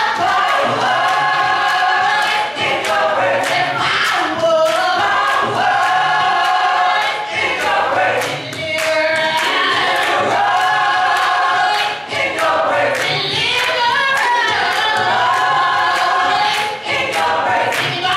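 Women's a cappella gospel group singing in harmony, with no instruments: a lead voice carries over the sustained backing voices.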